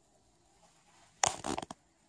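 A quiet room, then a short cluster of rustling and scuffing noises a little past a second in, from a person turning around and stepping off.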